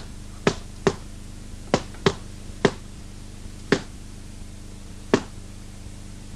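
Punches landing in a boxing fight: about seven sharp, slapping hits at an irregular pace, over a steady low hum.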